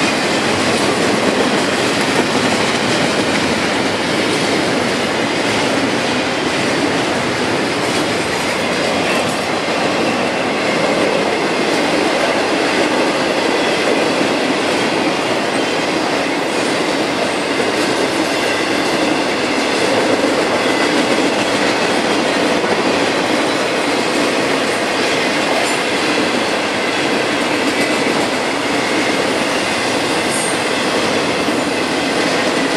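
Intermodal freight train's double-stack container cars and trailer-carrying flatcars rolling past close by: a loud, steady rolling noise of steel wheels on rail.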